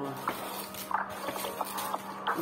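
Dried banana chips tipped from a plastic tub and dropping onto a plate, a few scattered crisp clicks and rattles over a steady low hum.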